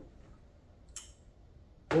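Near silence with one faint, short click about a second in.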